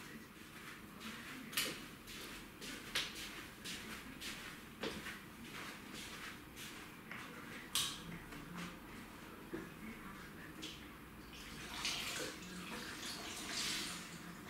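Bathroom cleaning in a small tiled room: water splashing and running, with scattered knocks and clicks. The water noise grows louder near the end.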